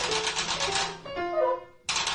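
Free-improvised jazz from drum kit, guitar, piano and trombone: a dense, rapid rattle of drumsticks stops about a second in, leaving a few held pitched notes, and cuts back in sharply near the end.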